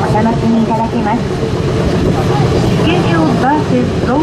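Steady running noise inside a descending aerial ropeway cabin, with a recorded guide announcement in English playing over the cabin speaker.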